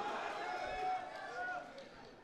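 Faint background chatter of several people talking at once, fading away near the end.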